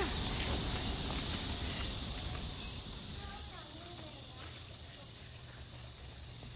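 Outdoor ambience: a steady high-pitched drone of insects over a low rumble, growing quieter after the first two seconds.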